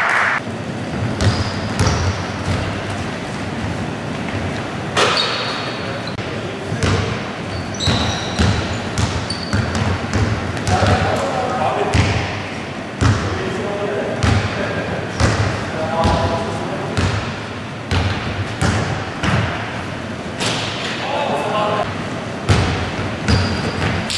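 Basketball bouncing on a wooden gym floor, repeated sharp thuds during dribbling and play, echoing in a large hall, with short high squeaks of sneakers on the court.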